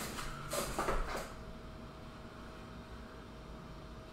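Faint handling clatter, a few light knocks between about half a second and a second in, then quiet room tone with a faint steady hum.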